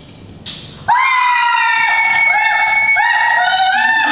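Several young women shrieking together in excitement, a loud, high-pitched scream of overlapping voices that starts suddenly about a second in and is held to the end.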